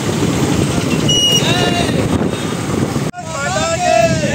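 A group of motor scooters and motorcycles riding together at low speed, their engines a dense low rumble with voices calling over them. About three seconds in, a sudden cut brings a crowd of riders shouting.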